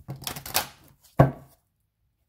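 A hand-held deck of large reading cards being shuffled: a rattle of card edges for most of a second, then a single sharper, louder slap of cards just over a second in.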